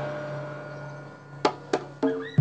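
Gamelan ensemble falling silent after a closing stroke: the struck bronze notes ring and fade away over a steady low electrical hum from the sound system. Two short sharp strikes come near the end.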